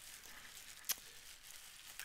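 Faint crinkling of a small clear plastic bag being handled, with one sharp click about a second in.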